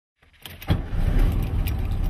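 A car engine starts after a few faint clicks, catching about two-thirds of a second in, then runs at a steady, evenly pulsing idle.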